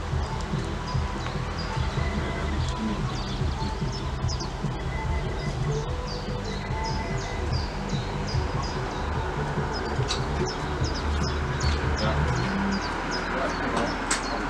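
Small birds chirping again and again over a steady low rumble. The rumble drops away about twelve and a half seconds in.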